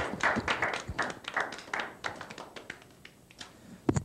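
Scattered hand clapping from a few people in a small studio, dense at first and then thinning out and fading over about three seconds. A single sharp knock comes near the end.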